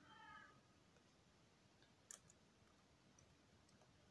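Near silence with a few faint keyboard keystroke clicks as text is typed on a computer; the sharpest click comes about halfway through. A brief faint high-pitched squeak-like tone sounds at the very start.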